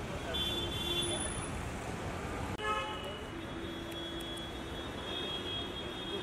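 Street traffic noise with a short car horn toot a little under three seconds in, just after the sound breaks off for an instant.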